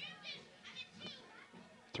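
Faint, distant shouts and calls from soccer players and spectators: several short voices rising and falling in pitch.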